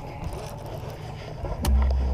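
Handling noise from a baitcasting rod and reel as a freshly hooked catfish is reeled in. A faint steady hum gives way to a sudden low rumble about one and a half seconds in.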